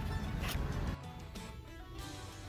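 Quiet background music, with a short click about half a second in.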